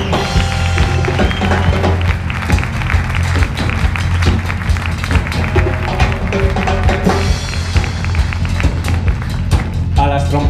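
Live band playing a steady groove under the introductions, with a strong bass line and regular drum strokes.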